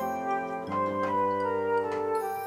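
Background music of sustained organ-like keyboard chords, with the chord changing about two-thirds of a second in.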